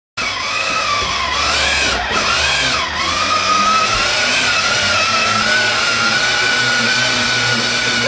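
Battery-powered ride-on toy motorcycle running along a floor: a continuous whine over a rough mechanical hiss. The whine wavers up and down in pitch for the first few seconds, then holds steady.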